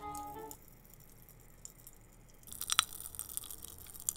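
A short run of musical tones ends in the first half second. After a quiet stretch, faint crackling, clicking mouth sounds of eating candy close to the microphone fill the last second and a half.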